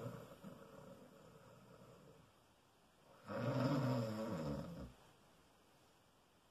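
A man snoring: a faint snore at the start, then one loud, long snore about three seconds in.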